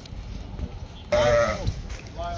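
A sheep bleating once, a single loud wavering call about a second in that lasts about half a second, over the low background noise of a livestock pen.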